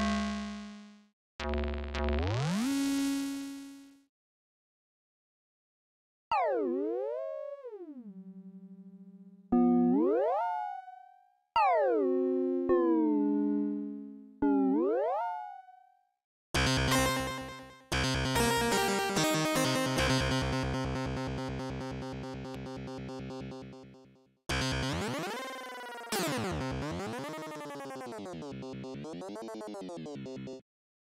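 Sampled Casio CZ synthesizer effects patches played one after another: spacey, old-school video game tones. Notes swoop down and back up in pitch, then a dense buzzy tone pulses rapidly, and near the end there are warbling up-and-down sweeps.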